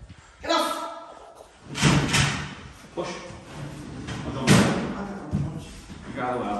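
Knocks and thumps of wooden under-bed drawers and bed frame being handled and set down, the sharpest knock about four and a half seconds in.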